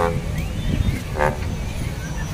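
Crowded seaside beach ambience: a steady low rumble of surf and wind under the chatter of many voices, with two short pitched toots, one at the start and one just past a second in.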